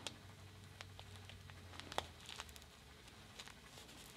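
A few faint crinkles and ticks from a clear plastic bag of potting soil handled in the hands while a syringe is pushed into it.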